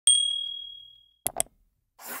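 A single bright, bell-like ding that rings out and fades away over about a second, then two quick short clicks. It is an intro sound effect over the opening title card.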